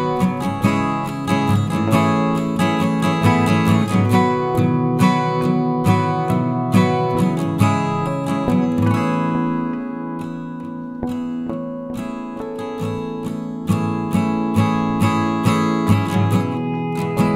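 Background music: acoustic guitar strummed and plucked in a steady rhythm, softening for a few seconds midway before picking up again.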